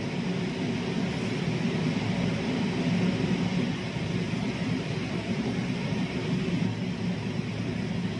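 Steady background rumble with hiss, even throughout.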